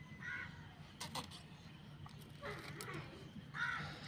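A crow cawing a few times in short, harsh calls, with a couple of light clicks about a second in.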